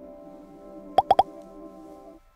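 Interface sound effect of an AR game menu: three short rising blips in quick succession about a second in, over an ambient music pad of steady held tones.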